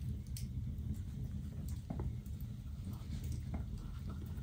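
Faint, scattered soft clicks and rustles of thread and needles being drawn through punched holes in leather during hand saddle stitching, over a low steady background hum.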